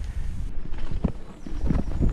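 Mountain bike riding fast downhill over rough dirt and gravel: tyre rumble with a run of rattling knocks from the bike over the bumps, picking up about a second in, with wind on the microphone.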